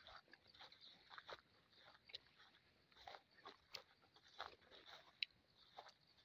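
Near silence broken by faint, irregular crackles and rustles, typical of footsteps and movement through grass and brush.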